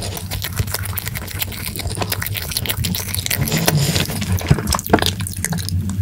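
Close-miked wet chewing of an Orion Choco Pie, a chocolate-coated marshmallow snack cake, with many small sticky mouth clicks. Near the end come swallows and gulps of milk.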